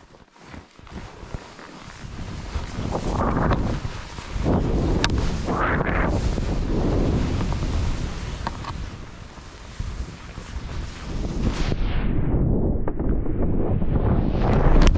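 Wind buffeting the microphone of a skier's head-mounted camera as the skis plane through deep powder, rumbling and hissing in swells with each turn. Near the end the sound turns muffled for a couple of seconds.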